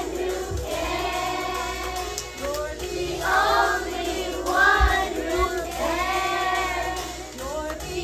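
A group of young children singing a worship song together, with musical accompaniment.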